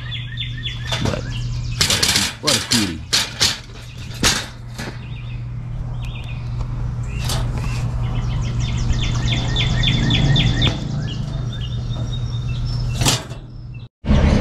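Galvanized wire cage trap rattling and clicking as the live chipmunk inside scrambles against it. Sharp knocks come mostly in the first few seconds, and bursts of rapid high-pitched chirping come and go over a steady low hum.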